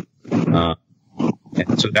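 A man's voice in conversation: short voiced sounds and hesitations with brief pauses, picking back up into speech near the end.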